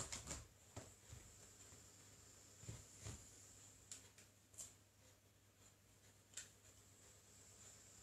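Near silence: a few faint clicks and knocks of a cable and plug being handled, over a low steady hum.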